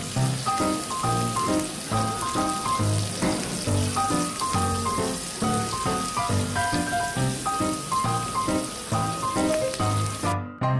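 Meat sizzling on a small tabletop grill, a steady hiss under background music with a regular beat and a plucky melody.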